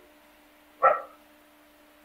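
A single short, sharp bark-like call about a second in, over a faint steady hum.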